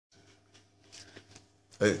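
Faint, soft clicking and rasping of a cat licking face cream off a man's cheek, over a low steady hum. A voice starts speaking loudly near the end.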